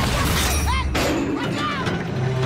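Film sound effects: a loud rushing noise over a deep rumble, with a few short rising-and-falling chirps about halfway through.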